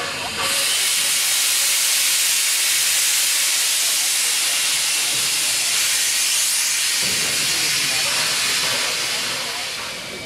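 Victorian Railways R class steam locomotive venting steam: a loud, steady hiss that starts suddenly about half a second in and eases off near the end.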